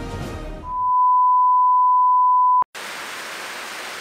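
A news-style theme tune fades out. A loud, steady high beep holds for about two seconds and cuts off with a click, and television static hiss follows.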